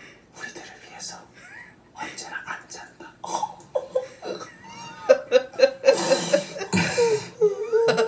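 Mostly speech: hushed, whispered voices with stifled giggling and laughter, growing louder and breathier near the end.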